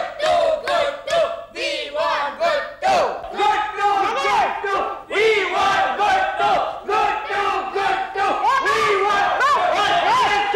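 A small group of people shouting and cheering together, several voices overlapping in excited yells.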